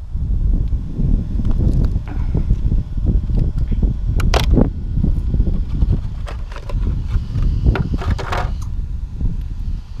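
Handling noise from a Traxxas Bandit RC buggy being picked up and its body shell taken off, with a few sharp clicks and a short rattle partway through, over a constant low rumble of wind on the microphone.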